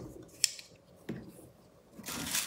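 Light handling sounds of a hand picking an item out of a clear plastic storage bin. There is one sharp click about half a second in and a softer knock just after a second, with faint rustling between.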